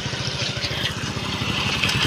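Motorcycle engine running steadily at low speed, its firing pulses coming fast and even.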